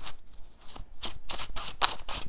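A gold-foil tarot deck being shuffled by hand: a quick run of short, papery card strokes that starts about half a second in.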